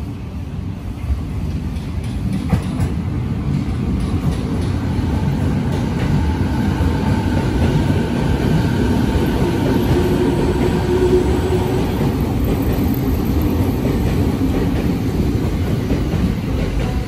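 JR 209 series 2200 'B.B.BASE' electric train running along a station platform: a steady rumble of wheels on rail that grows louder as the cars come close, with a faint whine over it in the middle.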